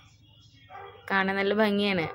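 A brief pause, then a woman's voice speaking from about a second in.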